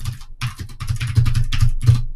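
Fast typing on a computer keyboard: a quick run of keystrokes, about eight a second.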